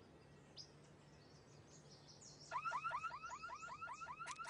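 Faint birdsong, then about two and a half seconds in a car alarm siren sets off: a fast, evenly repeating warbling tone, about six or seven pulses a second.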